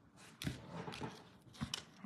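Faint rustling and a few soft, short taps as ribbon is handled and knotted around a folded paper card.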